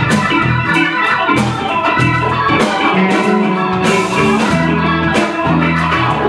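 Live blues band playing an instrumental passage: electric guitar, bass, keyboard and drum kit, with a steady beat and a walking bass line.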